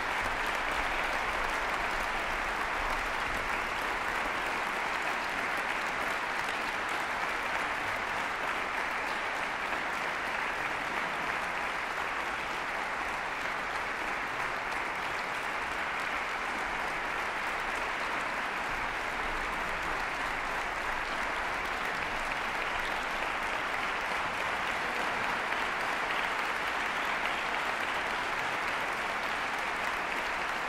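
Concert-hall audience applauding steadily.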